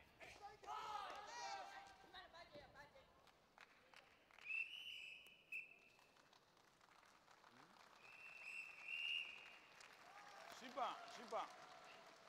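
Karate judges' whistles blown twice: a shrill blast about four and a half seconds in, cut by a brief break, and a longer blast about eight seconds in. Shouting voices come shortly before the whistles, and a man's voice speaks near the end.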